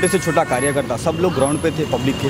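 Speech: a man talking without a pause.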